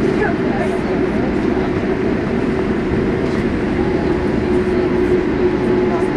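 Cabin noise of a Boeing 787-8 airliner taxiing after landing: a steady engine and air-system rumble with a constant low hum.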